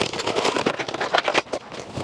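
Cardboard headphone box being pulled open by hand: rustling and scraping with a quick string of sharp taps and clicks. The box is opened upside down, so the plastic tray and its contents drop out onto the desk.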